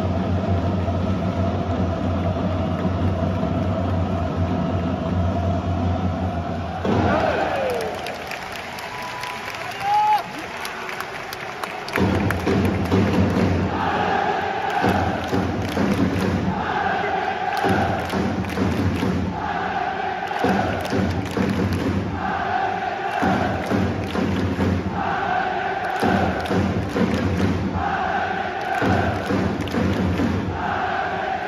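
Football supporters' section chanting in unison in a stadium, with drum thumps; after a lull the chant starts about twelve seconds in and repeats a short phrase about every two seconds.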